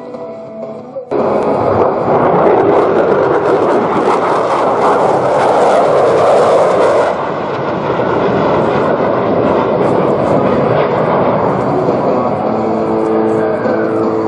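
Loud jet engine noise of a USAF F-16 fighter flying past during an aerobatic display, starting abruptly about a second in and brightest in the middle before easing slightly.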